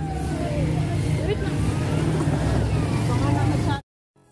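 A motor vehicle engine running steadily as a low hum, with faint voices over it. It cuts off suddenly near the end.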